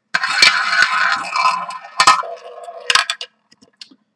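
Ball of a small tabletop roulette wheel rolling around the spinning bowl with a continuous rattle, knocking sharply a few times as it clatters over the pocket dividers, then coming to rest a little after three seconds in.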